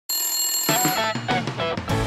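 Short musical intro jingle with a ringtone-like sound: a bright ringing tone, then a quick run of short melodic notes starting just under a second in.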